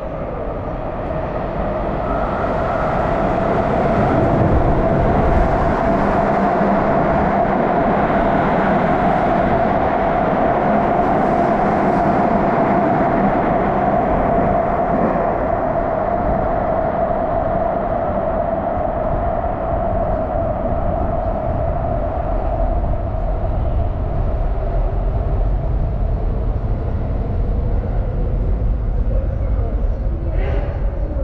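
Subway train running: a loud, steady rumble with a droning whine, building over the first few seconds, then holding steady.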